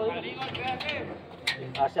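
Men's voices shouting around a fight cage, with a cornerman's shouted instruction starting near the end, and one sharp knock about one and a half seconds in.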